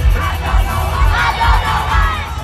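Concert crowd cheering and singing along over loud live pop music, a steady heavy bass beat pounding underneath; the massed voices swell about a second in.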